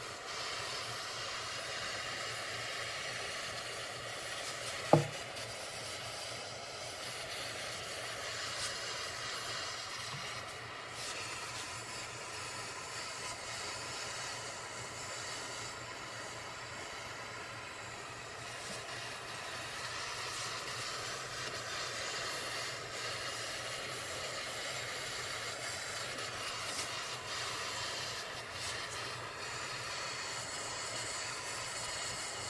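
Hand-held gas torch burning with a steady hiss as its flame heats an ATV steering knuckle's bearing bore, expanding it so the new bearing can go in without pounding. A single brief, sharp knock about five seconds in is the loudest moment.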